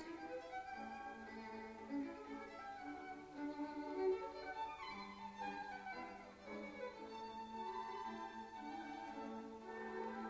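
Background music on bowed strings: a slow violin melody over held lower notes.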